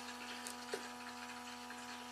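Autoline PRO Ventus portable smoke machine's small air pump running with a faint, steady hum as it pressurizes a sealed headlight housing. Two faint clicks come in the first second as the plastic headlamp cap is handled.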